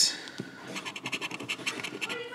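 A flat handheld scratcher tool scraping the coating off a lottery scratch-off ticket: a quick run of short scratching strokes, starting about half a second in.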